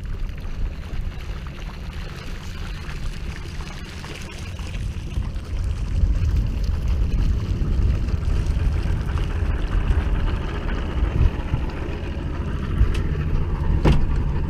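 Low, steady rumble of a boat's outboard motor mixed with wind on the microphone, getting louder about halfway through.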